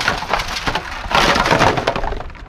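A sack of duck decoys being shaken and dumped out, the decoys clattering together and the sack rustling in two loud bursts, the second about a second in.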